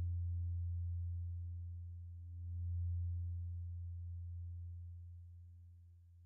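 Eurorack modular synthesizer holding a deep, steady low drone tone with fainter higher tones above it. It swells once about two and a half seconds in, then fades away.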